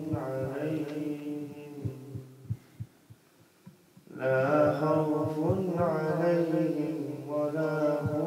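A man chanting a slow, drawn-out melodic devotional recitation. The voice fades away about two seconds in and comes back strongly after a short pause about four seconds in.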